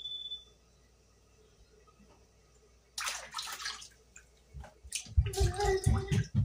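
Water splashing and sloshing as raw chicken pieces are rinsed by hand in a bowl of water in a stainless steel sink. There is one splash about halfway through and a busier run of splashing and knocks near the end, and a brief high tone at the very start.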